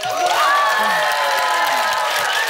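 Children cheering and shrieking with joy, several high voices held together for about a second and a half before trailing off.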